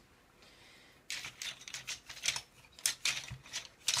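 Wooden pencils and markers clicking and rattling against each other and a desk holder as they are handled. A quick, uneven run of small clicks starts about a second in.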